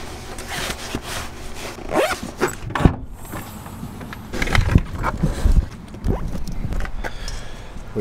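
Handling noise of a multi-effects pedal being packed into a padded soft gig bag: rustling and knocking, with one sharp knock just before three seconds in. About halfway through comes a steadier low rumble of outdoor noise with more scattered handling sounds.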